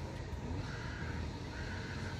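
A crow cawing twice, hoarse calls about a second apart, over a steady low background rumble.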